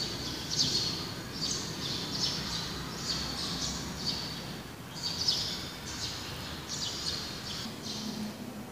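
Small birds chirping: short, high chirps repeated about one to two times a second, over a faint low room hum.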